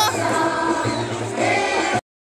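Music with a group of voices singing held notes over an accompaniment.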